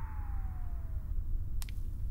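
A single tone gliding slowly downward, fading out about a second in, over a low steady hum, from the TV soundtrack; a faint click follows near the end.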